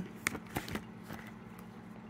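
A few soft clicks and crinkles in the first second from handling a binder's plastic page protectors as a page is turned, then only faint room tone.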